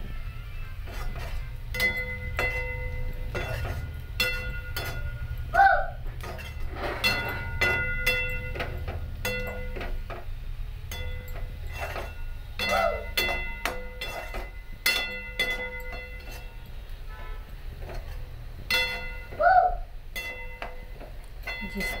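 A metal spatula scraping and knocking against a steel kadhai while frying masala, each stroke making the thin pan ring. There is a steady low rumble underneath.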